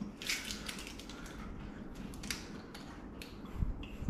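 Plastic water bottle crackling and clicking in the hands as its screw cap is twisted open, in an irregular run of small crackles.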